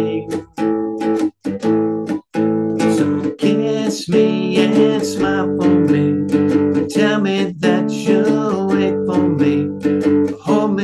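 A 2-string license-plate cigar box guitar strummed in a steady chord rhythm through an instrumental passage, heard over video-call audio. The sound cuts out briefly a few times in the first couple of seconds.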